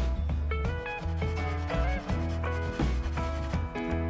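Background music with a steady bass line and a melody. Over it comes the dry scratchy rubbing of a soft chalk pastel stick stroked across paper to lay down a colour swatch, busiest about a second in.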